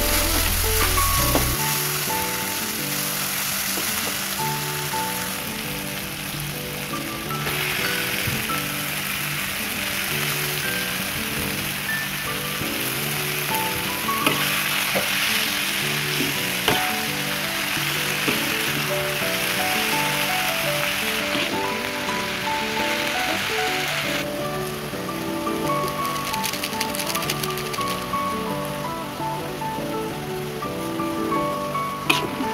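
Oil sizzling in a wok as a chili, shallot and garlic paste and then cassava leaves are stir-fried, with a few spatula clicks, under steady background music.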